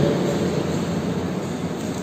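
Steady rushing background noise with no voice, spread evenly from low to high pitch; speech cuts back in sharply at the end.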